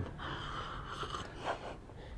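Faint sipping and breathing of a person drinking from a mug of coffee, a few soft breathy sounds.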